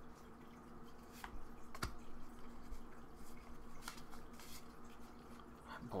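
Faint handling of a booster pack and its trading cards: a few soft ticks and rustles spread out over a faint, steady low hum.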